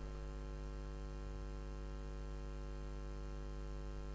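Steady electrical mains hum from the microphone and sound system: a low, unchanging hum with a ladder of fainter higher tones above it.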